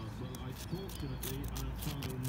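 Light scraping of a pointing trowel in a brick joint, raking out soft, crumbling mortar that has turned to dust behind its hard outer face. A faint voice is heard under it.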